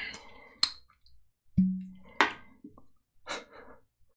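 Glass whiskey bottles and tasting glasses being handled on a wooden table: a few separate knocks and clinks, one about a second and a half in followed by a short low ring that fades.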